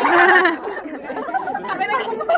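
Several people's voices shouting and chattering together, opening with a loud, high-pitched shout that fades within the first half-second.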